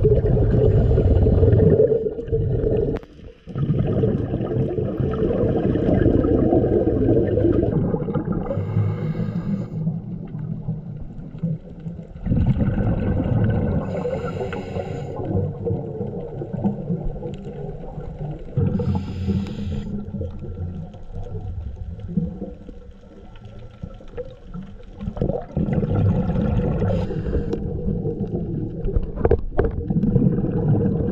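Scuba diver breathing underwater through a regulator: slow cycles of drawn breaths and rushing exhaled bubbles, with a bubble burst every five seconds or so.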